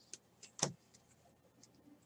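Stack of baseball trading cards being flipped through by hand: a few short papery snaps and rustles as one card is slid off the pile, the loudest just over half a second in.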